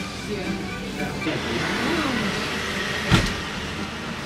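Road traffic: a car passing on the street outside, its noise swelling and fading over a couple of seconds, with faint voices in the background. A single sharp click comes about three seconds in.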